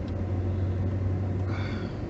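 Steady low drone of engine and road noise inside a moving car's cabin.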